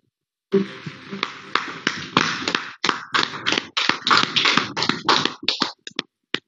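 A small group clapping in dense, irregular claps that start about half a second in and stop just before the end, heard through a video-conference feed.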